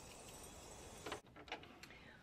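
Near silence, with a few faint clicks and rustles from fabric being handled and pulled away from a serger.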